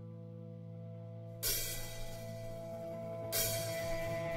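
Opening of a heavy rock song: a quiet held chord rings steadily, and cymbal crashes come in about one and a half seconds in and again near the end.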